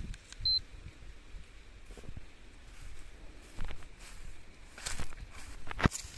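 A handheld Emingen GPS land-area meter gives one short, high beep about half a second in as its start key is pressed to begin tracking the area. A few scattered crunches of footsteps through dry grass follow.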